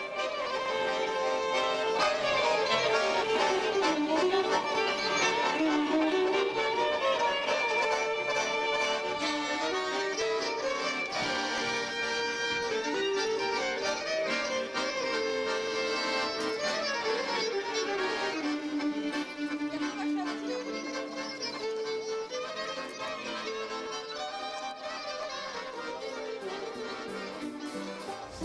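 Two violins and an accordion playing a traditional tune together, the violins carrying the melody over the accordion's chords.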